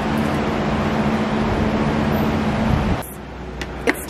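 Steady rush of moving air with a low hum from a shop fan blowing through the room, cutting off abruptly about three seconds in.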